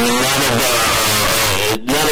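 A man talking continuously over a video-call link, with a brief drop in level near the end.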